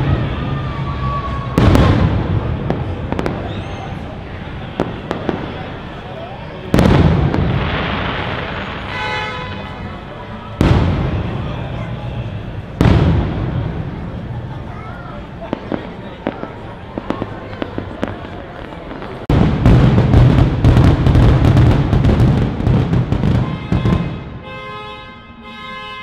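Aerial fireworks bursting overhead: single loud booms about 2, 7, 11 and 13 seconds in, each dying away with a rumble, then a rapid string of bangs and crackles over the last five seconds.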